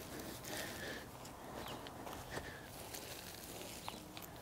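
Faint rustling and scraping of mulch being spread and smoothed by hand over the soil of a rose bed, with a few small clicks. Short faint high notes recur roughly once a second in the background.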